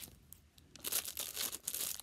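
Plastic packaging bag crinkling and crackling as it is cut open with scissors, starting about a second in.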